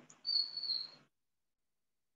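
Brief rustle of a jacket being pulled onto the shoulders, heard through a video-call microphone. A thin, steady, high chirp-like tone rides over it, and both cut off about a second in.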